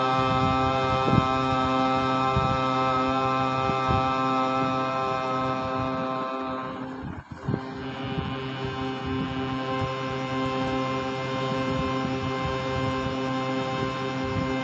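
Harmonium reeds holding long steady notes for slow alankar practice; about halfway through the sound dips for a moment and the next held note takes over.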